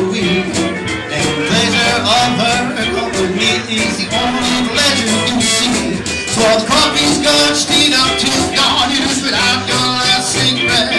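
A live country band playing with a steady beat, and a man singing into the microphone.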